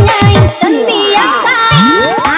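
Indonesian dugem electronic dance remix playing loud, with a steady kick drum on the beat. About half a second in, the kick drops out for a break of sliding synth tones, and a rising sweep starts near the end.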